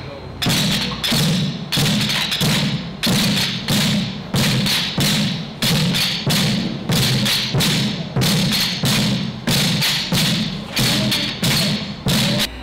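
A group of students drumming with sticks on upturned white plastic buckets used as recycled drums. The low thuds and sharper hits fall in a steady, repeating rhythm that starts about half a second in.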